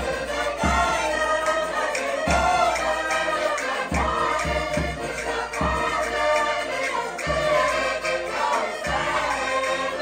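Portuguese folk music: diatonic button accordions and a cavaquinho playing while several voices sing together, with low thumps sounding through it.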